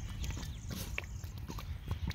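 A corgi sniffing and snuffling in wet grass: a scatter of short, quick sniffs and clicks over a low rumble.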